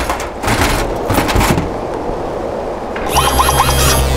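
Cartoon sound effects of a metal robot scraping and clattering down a rock face: several knocks in the first second and a half, then a rough scraping rush. About three seconds in, a low electronic throbbing hum starts.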